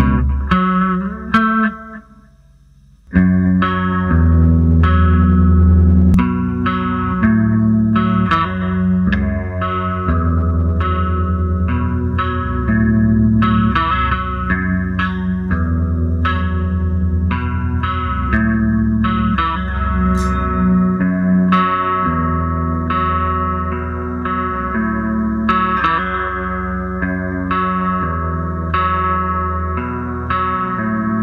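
Jackson Rhoads JS32 electric guitar playing a clean riff through a slight delay and some chorus. A few picked notes open it, there is a short pause about two seconds in, and then the riff repeats steadily.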